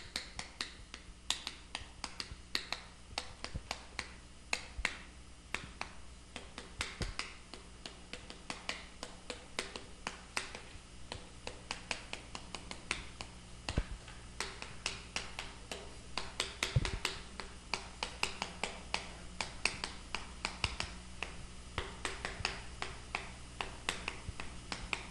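Chalk writing on a chalkboard: an irregular run of sharp taps and short scratches, several a second, as the chalk strikes and drags across the board.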